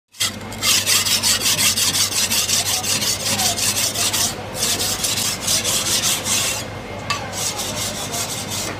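A steel cleaver scraped rapidly back and forth across a wooden chopping block, about five or six rasping strokes a second. The strokes break off briefly about halfway through, then stop near the end with a few more strokes after.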